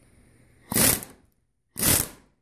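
Pneumatic impact wrench run in two short bursts, each about a third of a second, loosening a nut on an air brake regulator body held in a vise.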